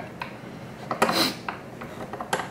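Hands working at a fly-tying vise: a few small clicks and, about a second in, a short rasping rub as the turkey biot is handled with hackle pliers and rewrapped on the hook.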